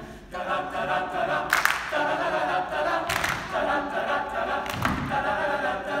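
Male choir singing a cappella in held chords that change about every second and a half, without clear words, with a few sharp accents between them.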